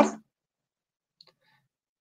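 A spoken word trailing off, then near silence with a faint, brief click a little over a second in.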